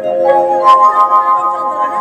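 Organ playing a rising run of held notes, each new note sounding over the last. A couple of bright metallic clinks come in just under a second in.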